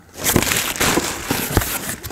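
Clear plastic bag crinkling and rustling as a cordless drill is pulled out of it, with a couple of light knocks of the tool being handled.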